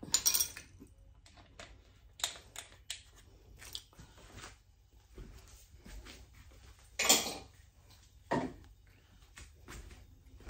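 Scattered light clicks and knocks of kitchen things being handled and set down, with a louder clatter about seven seconds in and another shortly after.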